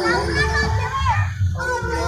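Many children's voices calling out and chanting together, with a low pulsing beat underneath.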